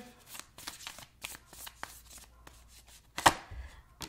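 Tarot deck being shuffled and handled by hand: a run of light card clicks and flicks, with one sharper snap about three seconds in.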